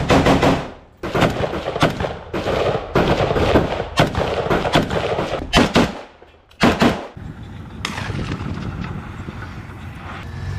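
Close-range rifle fire in a firefight: single shots and rapid strings of shots, with short lulls about a second in and about six seconds in. The firing dies down after about eight seconds.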